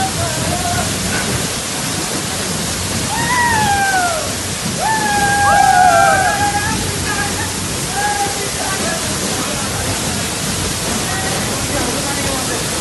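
A tall waterfall pouring into a rock plunge pool, a steady rush of falling water that never lets up, with splashing from people wading in it. Over it, voices shout, with two long gliding cries about three and five seconds in, the second the loudest.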